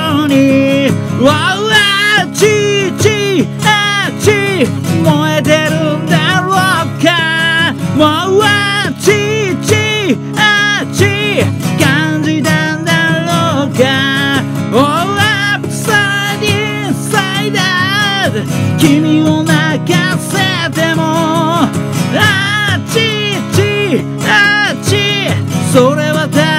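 Steel-string acoustic guitar strummed steadily in a driving rhythm, with a man singing loudly over it.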